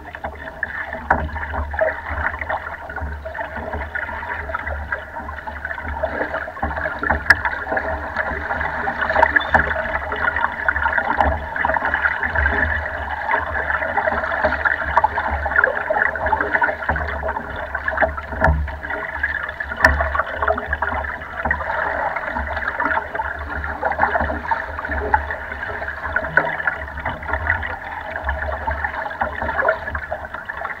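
Choppy lake water lapping and splashing steadily against the hull of a small wooden rowboat under way, with an uneven low rumble underneath.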